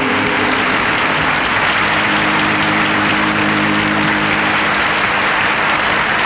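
Audience applauding steadily, with a held low chord from the band underneath.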